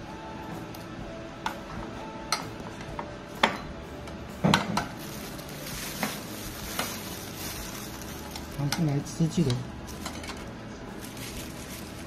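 A metal spoon clinking and scraping against a bowl as a child scoops food, about half a dozen light clicks spread over the first seven seconds.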